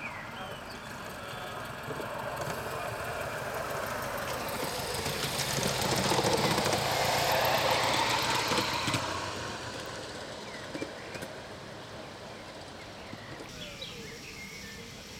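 A ridable live-steam model steam locomotive, a black Reichsbahn-style streamliner, running past: its steam and exhaust noise grows louder, peaks in the middle, then fades away.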